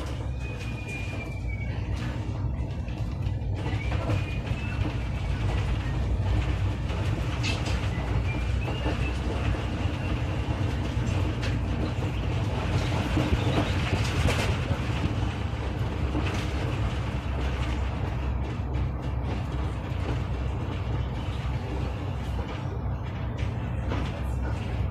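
SOR NB 18 City articulated diesel city bus heard from inside the passenger cabin, its engine and drivetrain running under way with a steady deep rumble. The noise builds over the first few seconds as the bus gathers speed, then holds steady.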